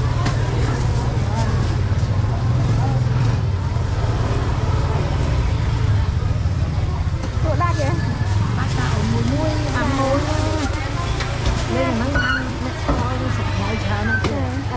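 Busy market ambience: people talking, the voices coming through more clearly from about halfway through, over a steady low rumble.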